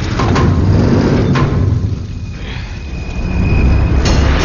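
Action-film sound effects: a deep rumble with a few sharp metallic impacts in the first second and a half, then a thin, high, steady tone over the rumble in the second half.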